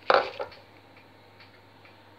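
Two sharp clinks of a metal teaspoon knocking against a stainless steel mixing bowl, close together near the start, then a faint steady low hum.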